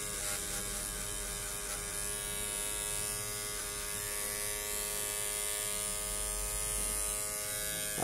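Electric hair clippers running steadily with an even buzz as the blade cuts hair on the side of the head.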